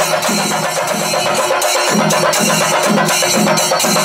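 A chenda melam ensemble: several Kerala chenda drums beaten with sticks in fast rolls, over a steady low beat about three times a second.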